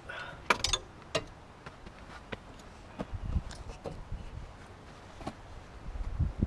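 A few sharp clicks and light knocks, several in the first second and single ones later, with some soft low thumps: hands and objects knocking against the car's front end as it is worked on.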